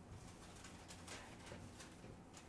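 Faint strokes of a dry-erase marker on a whiteboard, a few short scratchy swipes, over a low steady room hum.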